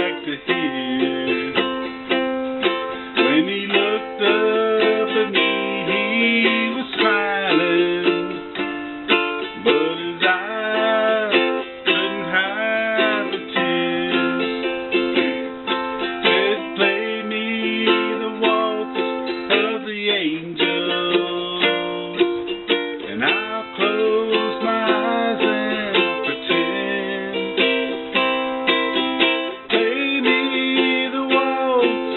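Ukulele strummed in chords, with a man singing the melody of a country waltz over it.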